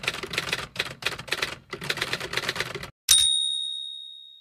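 Typewriter keys clacking in a quick run of keystrokes, then a single bell ding about three seconds in that rings on and fades.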